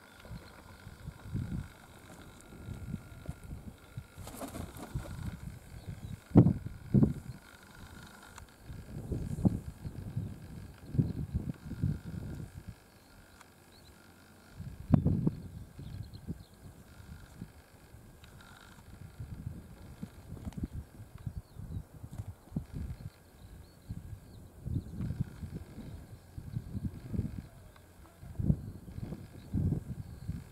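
Uneven low rumbling of wind on the microphone, coming in gusts with a few louder thumps.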